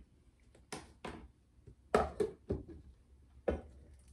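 Faint, scattered knocks and clatters of a clear plastic lid and a mixing bowl being handled, about five short separate sounds.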